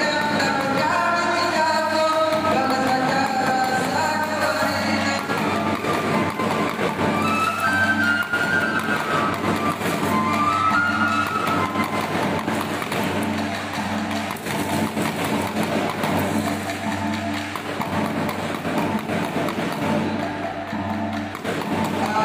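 Live traditional Acehnese dance music: a moving melody over steady percussion with a gong.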